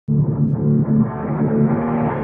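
Background music with guitar, sounding muffled at first and slowly brightening as the high end opens up.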